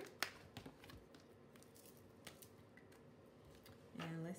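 Mostly near silence while a Sharpie marker is handled: one sharp click about a quarter second in, like a marker cap being pulled off, then a few faint taps and handling noises.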